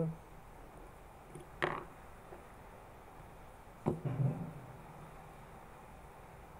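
Quiet room with two brief sharp clicks, one a little under two seconds in and one just before four seconds in, from electronic parts being handled; a short low murmur follows the second click.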